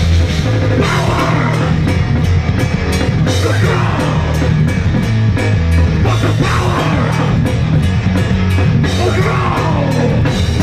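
A thrash metal band playing live and loud, with distorted electric guitars driving a fast riff over rapid drums.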